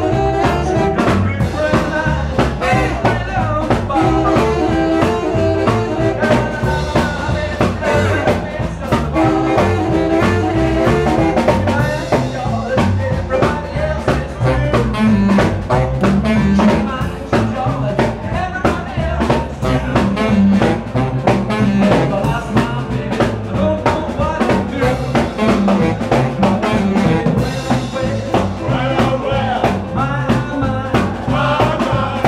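Live blues-swing band playing an instrumental passage: saxophone riffs over upright double bass, drum kit and electric guitar.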